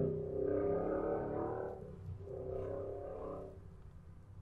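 A faint person's voice, drawn out and without words, in two stretches of about a second and a half each that fade away.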